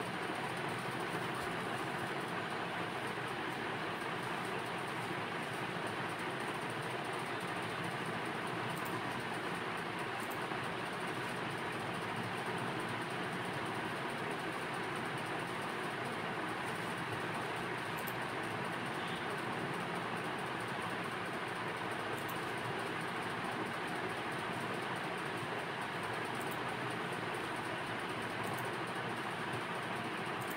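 Steady, even rushing background noise with no speech, and a few faint clicks scattered through it.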